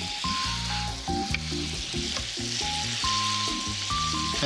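Slices of beef tenderloin sizzling steadily in a frying pan in a balsamic vinegar and butter sauce, over background music.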